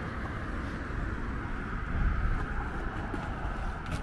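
Steady road traffic on a city bridge, an even noisy rumble that gets a little louder about halfway through.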